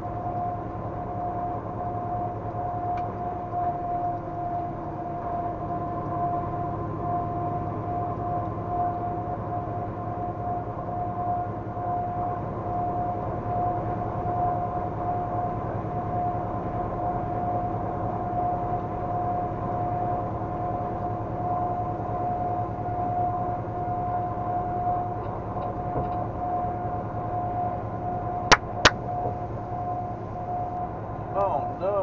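Steady road and engine noise heard inside a vehicle at highway speed: a low drone with a constant high-pitched whine over it. Two sharp clicks about half a second apart near the end.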